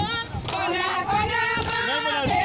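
A garba song with a high voice singing a melody over amplified music.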